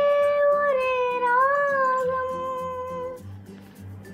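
A child singer holding one long high sung note over a soft backing track with a repeating low bass line. About a second in, the note dips slightly with a small bend, and it fades out around three seconds in.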